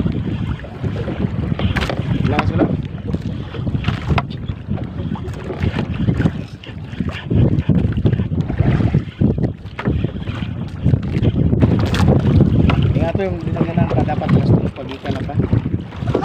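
Wind buffeting the microphone over waves washing against a small outrigger boat on choppy sea, with scattered knocks against the hull.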